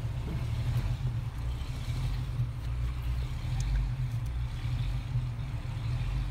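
A 2006 Hummer H3's engine idling, a steady low rumble heard from inside the cabin, with a few faint clicks from handling the test light.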